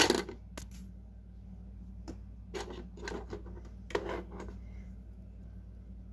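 Light clicks and taps of hard plastic, about eight in the first four and a half seconds, as hands handle plastic Lego toys and the tablet that is recording, over a faint low steady hum.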